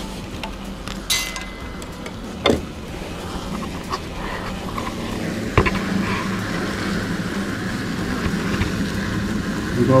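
Insecticide powder duster blowing a steady hiss and hum through a lance into a chimney flue, getting a little louder about halfway through. There are a few sharp knocks along the way.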